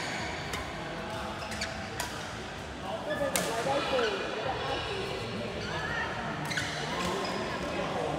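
Badminton rally: rackets striking a shuttlecock, several sharp clicks a second or two apart that ring briefly in a large hall, with players' voices underneath.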